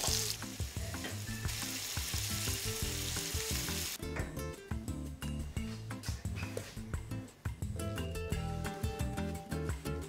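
Meatballs and freshly poured tomato sauce sizzling in a hot frying pan on a gas hob. The sizzle is strongest for the first four seconds, then dies down to scattered crackles, under background music.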